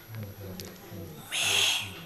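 A breath drawn into a close microphone, a short hiss a little over a second in, over faint low hum.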